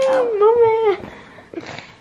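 A single long, high, wavering vocal cry that stops about a second in, followed by a few faint knocks.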